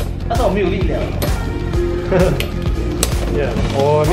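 Background music over Beyblade X spinning tops whirring and knocking against each other in a plastic stadium, with several sharp clicks as they collide.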